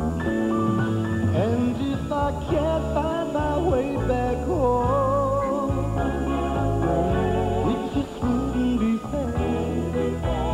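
A male singer performing a slow pop ballad live with band accompaniment, holding long notes with vibrato.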